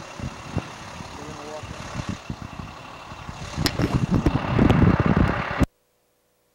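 Outdoor background noise, a steady hiss with a brief faint voice, growing into louder rumbling and clicks about three and a half seconds in, then cutting off abruptly shortly before the end.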